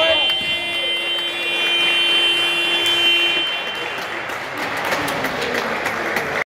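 Sports-hall game-clock buzzer sounding one long steady tone, which cuts off about three and a half seconds in: the end-of-quarter signal. Crowd and player noise carries on in the hall around and after it.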